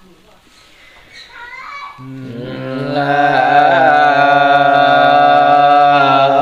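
Unaccompanied Dao folk singing (páo dung): after a quiet start, a single voice comes in about two seconds in and holds one long, slightly wavering note that swells louder.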